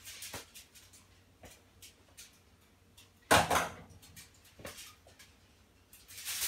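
A sheet of aluminium tin foil being handled and unfolded, crinkling in scattered light rustles, with a louder crinkle a little past the middle.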